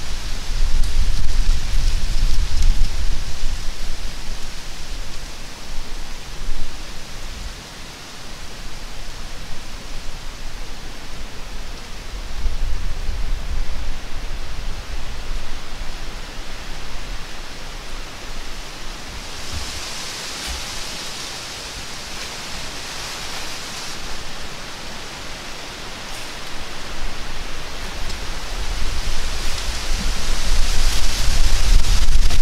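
Wind in gusts: low rumbling buffets on the microphone, with a steady hiss through bare branches and dry leaves that swells about two-thirds of the way through and again near the end.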